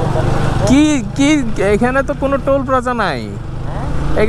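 A voice talking over the steady low rumble of a motorcycle under way on the road. The talking starts about a second in and stops shortly before the end, while the rumble carries on underneath.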